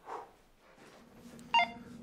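A short electronic telephone beep about one and a half seconds in, like a phone key tone, after a faint brief sound near the start.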